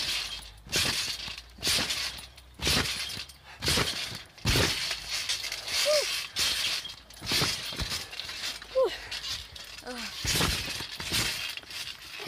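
Trampoline being bounced on: a run of mat thumps roughly a second apart, each with a metallic jangle from the springs.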